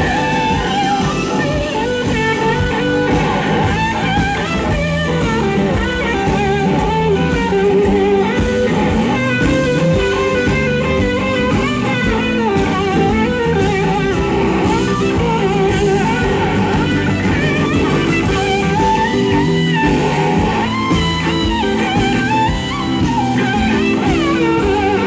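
Live rock-blues band playing an instrumental section. A lead electric guitar plays a solo line of sliding, bending notes over drum kit, bass and keys.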